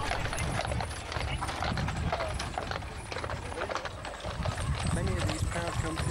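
Hooves of a pair of Shire horses clip-clopping on a paved road as they pull a show wagon past, with voices of onlookers talking around them.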